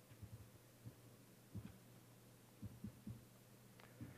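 Near silence: a steady low hum with a few faint, short low thuds scattered through it.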